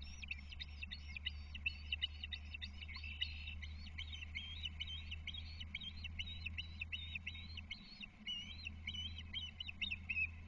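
Ospreys calling: a long, unbroken run of rapid, high whistled chirps, several a second, over a low steady hum.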